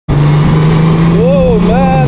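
Honda Gold Wing flat-six engine running at a steady cruise, a constant low drone over road and wind noise. A voice-like sound rising and falling in pitch joins it about halfway through.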